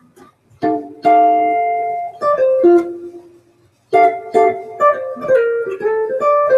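Archtop jazz guitar playing a short harmonized melodic phrase of chords and single notes, clean and sustained. It starts with a held chord, pauses briefly about four seconds in, then carries on with a quicker run of chord-melody notes.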